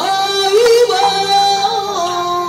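A Taiwanese opera (gezaixi) singer sings long held, wavering notes into a microphone, stepping up to a higher note about half a second in, over a faint instrumental accompaniment.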